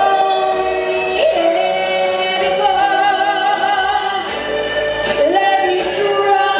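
A woman singing a slow song live into a handheld microphone over instrumental backing. She slides up into each phrase and holds long notes, with vibrato on the held note in the middle.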